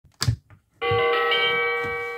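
Button on a Telly the Teaching Time Clock toy clicking as it is pressed, then the toy's electronic bell chime playing through its small speaker: a few notes that join one after another and ring on, slowly fading.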